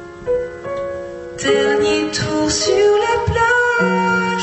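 A woman sings a song in French live, with an acoustic guitar accompanying her. Sustained chords ring at first, and her voice comes in with new chords about a second and a half in.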